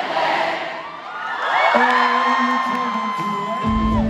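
Arena concert crowd cheering and shouting, then live music coming in over it: notes glide up and settle into a held chord about halfway through, and a deep bass enters just before the end.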